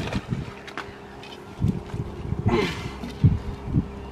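Light clicks and knocks from a collapsible crab pot being handled on a pontoon deck. There is a short louder rustle about two and a half seconds in and two knocks near the end.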